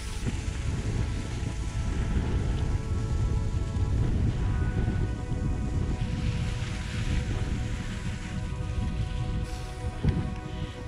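Wind rumbling over the microphone of a chest-mounted action camera while cross-country skiing, under background music with steady held chords.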